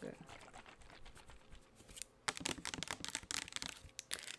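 Long fingernails tapping and clicking on a plastic Bath & Body Works foaming hand-soap bottle, a run of quick small taps that grows thicker about two seconds in.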